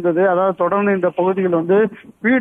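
Speech only: a news presenter reading a story in Tamil, continuous with brief pauses between words.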